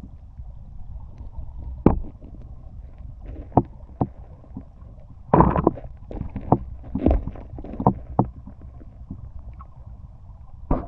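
Underwater sound of a river current picked up through a waterproof camera housing: a steady low rumble broken by irregular sharp knocks and clicks, several bunched together about five and a half seconds in.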